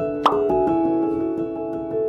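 Background music of soft held notes that shift pitch a few times. About a quarter second in, a short rising pop sound effect plays over the music.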